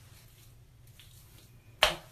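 A single sharp finger snap near the end, over faint room tone.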